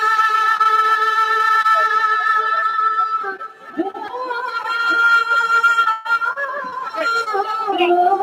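A woman singing a Hindi song into a stage microphone, amplified over the hall's sound system: she holds one long note for about three seconds, dips briefly, holds another, and slides between notes near the end.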